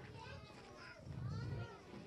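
Faint, indistinct chatter of children and adults, with a low rumble a little after a second in.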